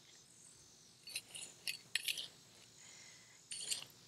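Hand trowel digging into garden soil in a raised bed: a few faint, short scrapes.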